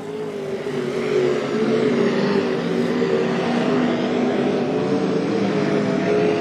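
Sprint car engines running at racing speed around a dirt oval: a loud, steady engine drone whose pitch rises and falls a little as the cars lap.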